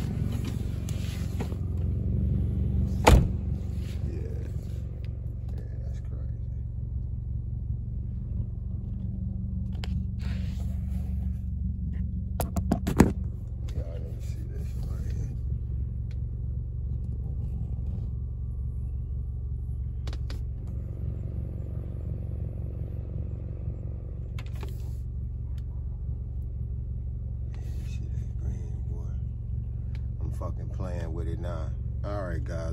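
Car engine idling steadily, heard from inside the cabin as a low hum. A sharp knock comes about three seconds in and a cluster of clicks and a knock around thirteen seconds, with a few faint ticks elsewhere.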